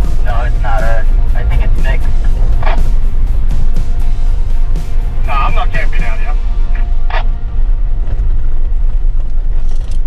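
Loud, steady low rumble of road and engine noise inside a Jeep's cabin as it drives a washboard dirt road, with short snatches of indistinct voices and music over it.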